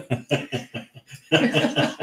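Male laughter: a quick run of short ha-ha pulses, which grows louder about a second and a half in.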